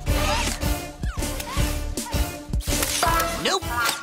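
Cartoon transformation sequence: upbeat background music with a quick run of mechanical clicks and snaps and a few sliding sound effects as the robot lizard reshapes.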